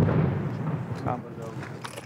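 A distant explosion, likely artillery: a sudden boom at the start that rumbles and fades away over about a second and a half.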